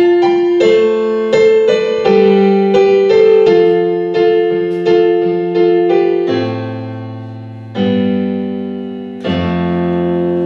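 Yamaha digital keyboard played with a piano sound, with no voice: chords struck in a steady pulse about every two-thirds of a second, then three long chords held and left to fade in the last few seconds.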